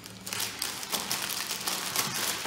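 Clear plastic zip-lock bag crinkling in the hands as its seal is pulled open, a run of irregular crackles.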